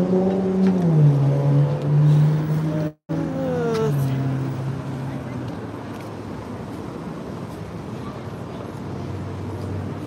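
A car engine on the street, running hard under acceleration with its note stepping in pitch. After a brief cut about three seconds in, a falling engine note fades into steady traffic noise.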